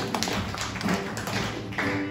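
Acoustic folk band in a sparse passage: a run of sharp, percussive strumming strokes with little held melody, then a sustained instrument note comes in near the end as the full band resumes.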